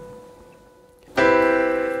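Piano: a single B note, struck just before, fades out, and then a C major seventh chord (C, E, G, B) is struck together about a second in and held.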